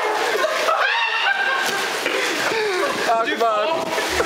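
A group of young men laughing and calling out, over a steady hiss of heavy rain.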